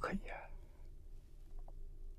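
A man's speech trailing off in the first half second, then a pause with only a faint low hum of room tone.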